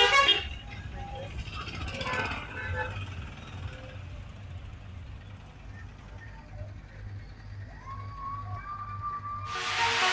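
Low, steady rumble of bus engines and road traffic, with a short loud burst right at the start. Loud music cuts in just before the end.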